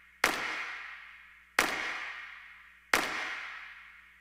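Three sharp trailer impact hits, evenly spaced a little over a second apart, each dying away in a long echoing tail.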